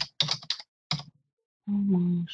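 Typing on a computer keyboard: a quick run of keystrokes in the first half second, then a single keystroke about a second in, as a name is typed into a search box. A short spoken word follows near the end.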